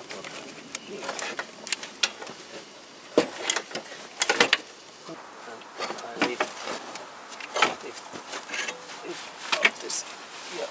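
Irregular knocks and clunks of a Toyota Corolla's manual gearbox being worked free and lifted out of the engine bay by hand, metal striking against metal, with the loudest clusters near the middle and again near the end.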